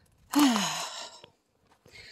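A woman's breathy, sighing "okay", falling in pitch, about half a second long.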